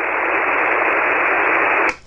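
Steady hiss of band noise from a ham radio receiver on 40-metre single-sideband, heard through the narrow voice passband once the other station stops talking. It grows slightly louder, then cuts off suddenly near the end.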